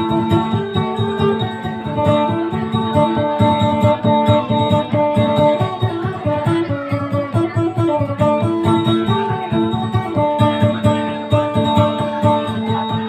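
Acoustic guitar plucked in a fast, continuous run of notes over a steady low note, playing the instrumental accompaniment to Maguindanaon dayunday song.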